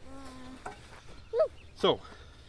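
A flying insect buzzing briefly close by near the start, one short even-pitched drone; later a short voice sound and a spoken "So" near the end.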